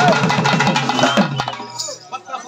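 Karagattam folk drums, a stick-beaten double-headed barrel drum with a frame drum, playing a fast, even run of strokes that stops about a second and a half in.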